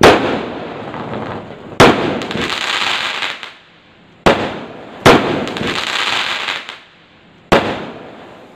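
Fireworks: five sharp bangs, each followed by a second or so of fading crackle.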